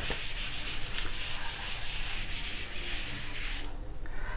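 A board duster rubbing chalk off a chalkboard in repeated scrubbing strokes, stopping just before the end.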